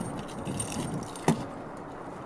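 Car keys jangling, then one sharp click from the car door latch as the driver's door is pulled open, a little past a second in.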